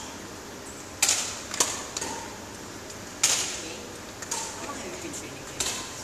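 Badminton rackets striking a shuttlecock back and forth in a rally: about five sharp cracks, one every second or two, each echoing briefly in a large hall.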